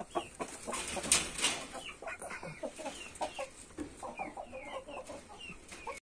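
Young chickens clucking with many short calls and high, falling peeps, with a brief scuffing noise about a second in.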